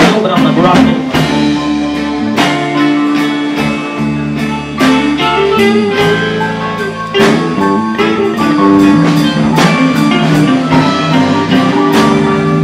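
Live band playing an instrumental passage on electric guitar, bass guitar and keyboard, with regular drum hits keeping the beat.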